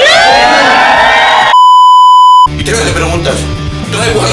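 An edited-in bleep, one steady high tone lasting about a second and the loudest thing here, cuts in about a second and a half in. Before it, crowd voices rise in a whoop; after it, background music with guitar starts.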